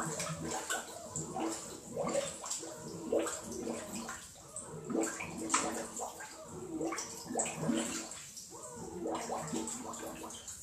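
Water sloshing and gurgling in irregular bursts.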